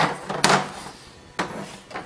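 Plastic chopper blade plates knocking and clacking as they are handled and set down on a tabletop: a few sharp knocks, the loudest about half a second in and a smaller one about a second and a half in.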